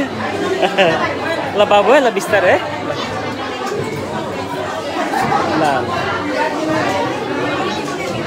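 Several people talking over one another around a dining table: overlapping chatter, with one voice standing out about two seconds in.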